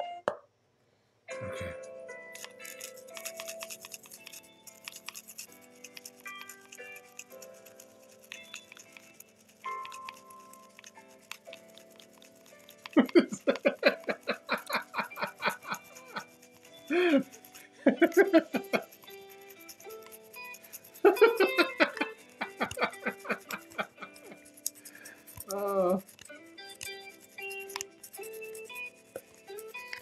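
A toothbrush scrubbed rhythmically against a hard object as an improvised percussion instrument, over steady background music, with bursts of laughter in the middle.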